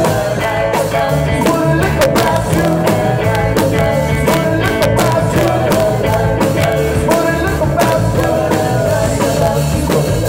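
Live rock band playing loudly, with a drum kit keeping a steady beat under electric guitar and keyboard, and a woman singing.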